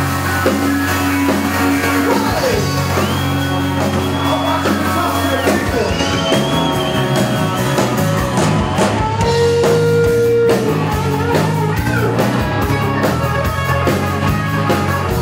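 Live 80s-style rock band playing loud, with electric guitars over bass and drum kit. Long high notes are held and bent in pitch a few seconds in.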